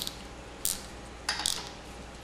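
Plastic zip tie being pulled tight, its ratchet giving four separate, unevenly spaced clicks.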